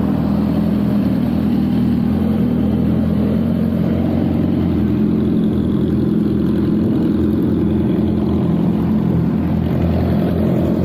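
BMW S1000RR's inline-four engine running steadily at low revs close to the microphone, its pitch holding even with no revving.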